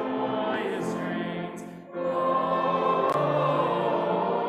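Choir singing a sacred piece with sustained notes. The sound dips briefly for a breath between phrases just before the middle, then comes back in with a new phrase.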